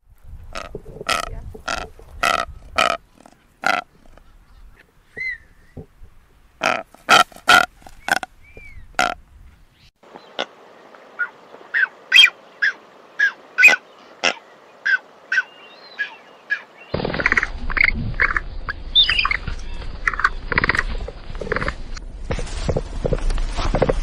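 Blue-footed booby calling in runs of short, evenly spaced calls, about two a second. About seventeen seconds in, a different, noisier recording of a capybara takes over, with a steady hiss and short repeated sounds.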